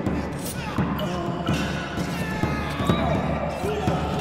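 Wordless voices gliding up and down, over repeated low thuds.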